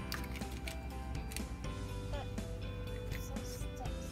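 Background music with scattered light clicks and rattles of small plastic toy pieces and a plastic egg capsule being handled.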